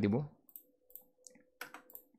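A few faint, scattered clicks of a computer keyboard while a CSS property is being deleted.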